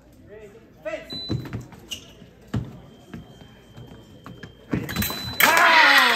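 Fencing bout: sharp knocks and stamps of footwork and blades on the piste, and a steady electronic tone from the scoring machine lasting about two seconds. Near the end a second tone comes with a loud shout from a fencer.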